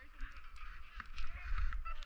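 Skis sliding and scraping over packed snow, with wind rumbling on the microphone that grows stronger toward the end.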